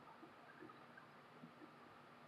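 Near silence: faint room tone with a few tiny, soft ticks.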